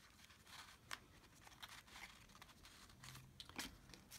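Faint rustling and light taps of card stock as 3x3 note cards are slid into a folded paper pocket, with a slightly louder tap about a second in and another near the end.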